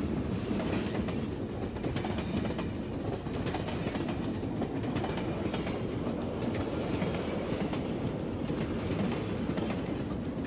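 Railway carriage in motion, heard from inside the compartment: a steady low rumble of the running train with the clickety-clack of wheels over the rail joints.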